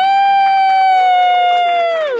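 A single high voice holds one long drawn-out note, a stretched-out "Merry", for about two seconds. It slides up into the note, holds it steadily, and glides down at the end.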